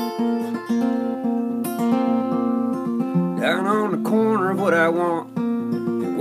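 Steel-string acoustic guitar strummed and picked in a song's opening, with a man's singing voice coming in about halfway through.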